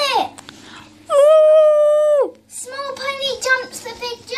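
A child's voice imitating a horse whinnying: a short falling cry at the start, a long held note about a second in that drops away at its end, then a quavering run of short notes.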